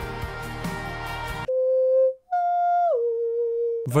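Live concert music breaks off suddenly about a second and a half in. A virtual on-screen piano then plays three single held notes in turn, C, then F, then B-flat, picking out the notes of the melody.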